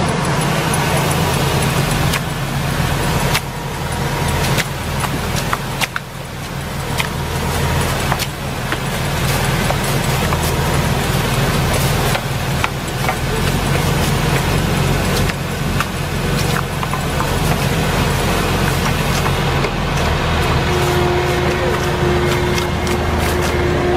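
Tractor engine of an olive trunk-shaking harvester running steadily, with scattered sharp clacks of long poles beating olive branches.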